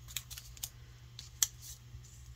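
Paper craft pieces being handled on a tabletop: a few soft rustles and light clicks, with one sharper tick about one and a half seconds in.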